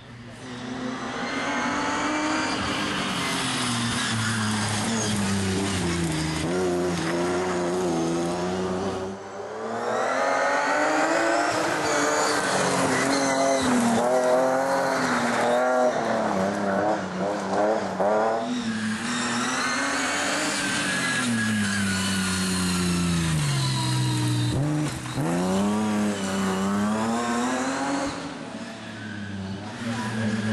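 Rally car engine under hard driving, its pitch climbing and dropping over and over as it accelerates and lifts off between corners, with a brief drop in level about nine seconds in.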